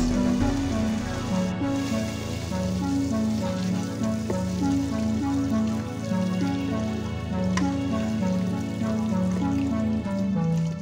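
Background music with a repeating melody of low notes, over a steady sizzle of a tomato and ají panca sauce simmering in the pan as sliced carrots are stirred in.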